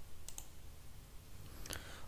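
Faint computer mouse clicks: two quick clicks about a third of a second in and another near the end.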